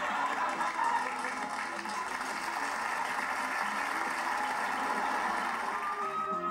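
Studio audience laughter with music underneath.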